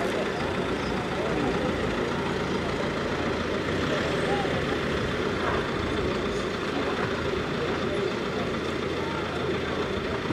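A vehicle engine idling steadily, with faint voices of people talking in the background.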